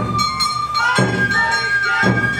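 Awa Odori festival music played live: a shinobue bamboo flute holds long, steady melody notes, stepping up in pitch just before a second in, over shamisen and a drum beat that lands about a second in.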